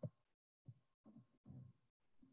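Near silence broken by a short click at the start and a few faint low thumps: small handling or desk noises near the microphone.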